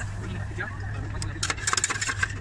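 Metal spatulas clicking and scraping on the frozen steel plate of a rolled ice cream counter, a quick run of sharp clicks starting about halfway through, over a steady low hum.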